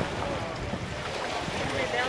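Wind buffeting the microphone, with faint voices in the background.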